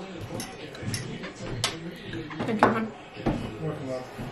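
Television broadcast of an American football game in the background, mostly commentators' voices, with a few sharp clicks of a fork on a plate and a louder clatter about two and a half seconds in.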